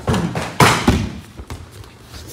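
Grapplers' bodies thudding onto foam mats as a sweep from under knee-on-belly lands: a few quick thumps in the first second, the loudest just over half a second in.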